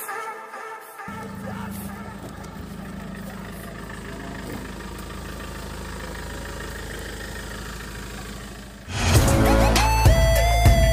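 Mahindra Scorpio SUV's engine running, a steady low hum. About nine seconds in, loud music with a deep bass and gliding synth notes starts.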